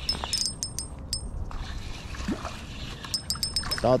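Spinning reel being cranked to reel in a hooked fish, its mechanism giving quick thin ticks in two spells, for about the first second and a half and again near the end, over a steady low rumble.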